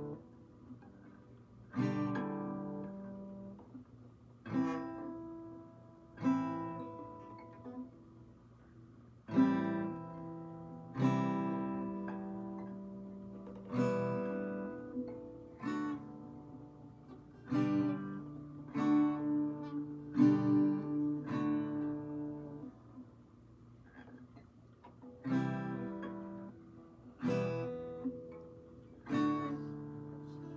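Acoustic guitar strummed one chord at a time, each chord left to ring for a second or two before the next, with a quicker run of strums midway. These are the slow, deliberate chord changes of a learner practising transitions.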